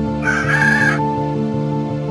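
Background music with sustained notes, over which a rooster's crow sounds once, briefly, starting about a quarter second in and ending about a second in.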